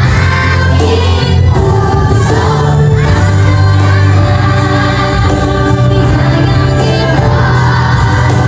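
A group of young children singing together over a recorded backing track with a steady bass line.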